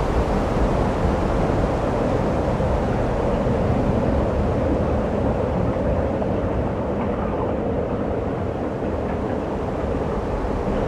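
Steady rushing of wind on the microphone and open-sea water, over a low, even drone like that of a motorboat running alongside.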